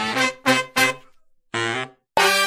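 Brass stabs opening a Latin group-dance song: three short notes about a third of a second apart, a brief silence, then one more short note near the end.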